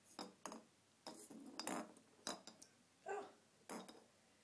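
Christmas decorations clinking and rattling in several short bursts, with a longer jingling stretch in the first half.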